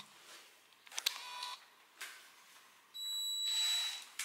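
Cordless drill running in short bursts while screwing metal drawer slides to a shelf: a brief whine about a second in, then a longer, higher and louder whine near the end.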